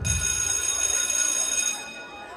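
A sustained ringing made of several steady high pitches. It fades out near the end, right after loud dance music has cut off.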